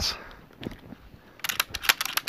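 A quick run of about six sharp, light clicks in the second half as the VR-series semi-automatic shotgun is handled, its parts and fittings clicking.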